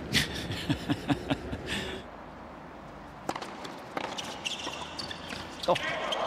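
A man laughing for the first two seconds, then tennis ball strikes on a hard court during a doubles point: a few sharp hits and bounces, spaced about half a second to a second apart.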